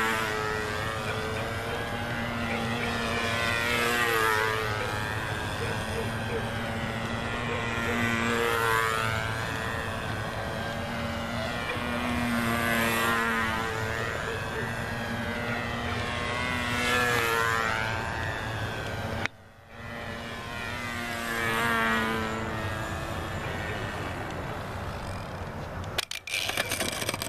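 Model biplane's small engine and propeller running at a steady high pitch, the sound swelling and fading about every four to five seconds as the plane circles past. The sound cuts out for a moment about three-quarters of the way through.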